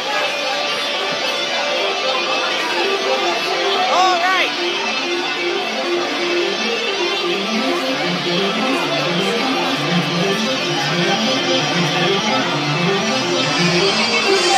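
Loud live band music played over a venue PA: a repeating guitar figure, joined about halfway through by a rhythmic bass line, over crowd chatter.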